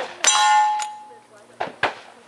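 A lever-action rifle shot and a steel target clanging, with a bright ringing tone that fades over about a second: the hit on the last standing target. Two short sharp clacks follow near the end.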